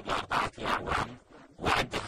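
A man's voice in quick, choppy syllable bursts, the audio noisy and distorted so that the voice lacks a clear pitch.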